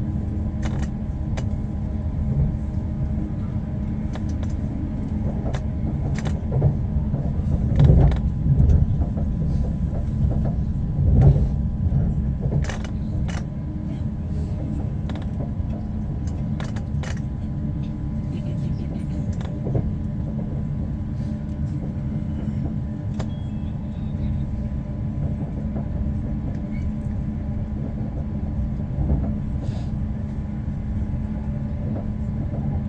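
Elizabeth line Class 345 electric train running at speed, heard inside the carriage: a steady rumble with a low hum. A run of clicks and knocks from the wheels on the track comes about a third of the way in.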